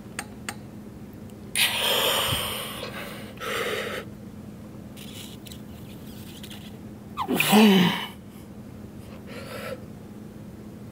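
A weightlifter breathing hard through a set of seated machine rows: a long forceful exhale about two seconds in, a shorter one near four seconds, and a loud strained grunt that wavers in pitch about seven and a half seconds in, with a brief breath near the end.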